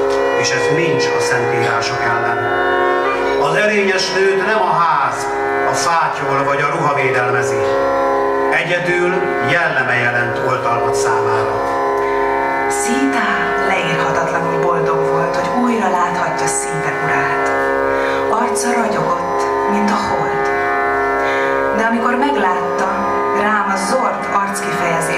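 Live Indian-style music: a sliding, ornamented melody over a steady held drone, with a violin among the instruments.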